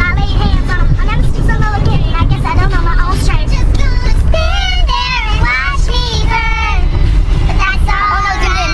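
A young girl singing loudly, with several drawn-out wavering notes in the middle, over the steady low rumble of a car cabin on the move.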